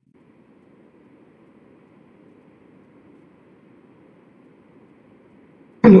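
Faint, steady hiss of an open line on a video call, with no other sound, until a man's voice says "Hello" just before the end.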